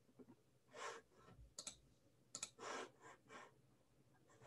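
Near silence with a few faint, short computer keyboard clicks, scattered through the pause as the presentation slide is advanced.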